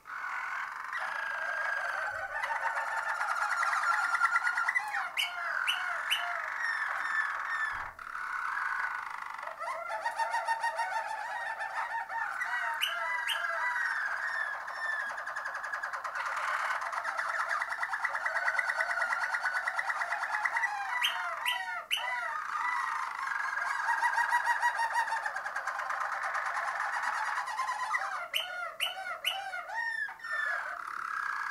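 Harzer Roller canary singing: a near-continuous, low-pitched rolling song of fast trills, broken briefly a few times and mixed with short, sharper high notes.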